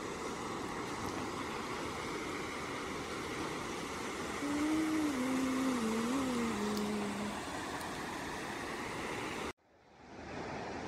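Steady rush of surf and wind on a sandy beach. About halfway through, a low wavering tone is held for about three seconds. The sound cuts out briefly near the end.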